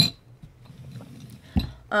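A metal drinking straw clinks against a glass mason jar, followed by a quiet sip and, near the end, a dull thump as the jar is set down on the desk.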